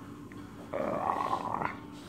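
A man's voice growling like a monster for about a second, a rough, noisy growl.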